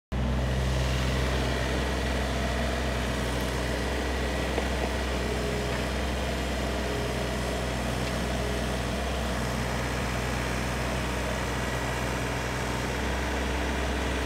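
Komatsu PC35MR mini excavator's three-cylinder diesel engine running at a steady speed.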